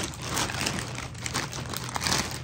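Clear plastic zip-top bag crinkling with irregular crackles as it is moved and handled.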